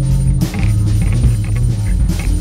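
Electric guitar playing low held notes over a recorded drum track.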